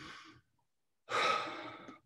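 A man's heavy sigh, a long exhale starting about a second in and trailing off, after a fainter breath at the start. It is a sigh of deep emotion.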